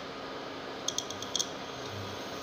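A quick run of about six small, sharp clicks about a second in, over a steady faint hiss.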